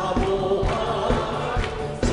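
A man singing a Korean hymn into a microphone, with a group of voices singing along. Band accompaniment with a steady drum beat plays underneath.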